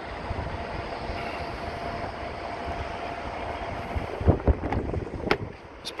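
Wind rumbling on the microphone, then a few short clicks and knocks in the last two seconds as the Porsche Panamera's door is opened.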